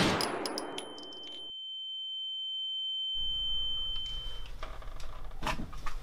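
The tail of a pistol gunshot sound effect, a loud crack dying away over about a second and a half, followed by a high, steady ear-ringing tone that stops about four and a half seconds in, the film's way of showing deafened ears after the shot. Quiet room noise returns about three seconds in, with a short knock near the end.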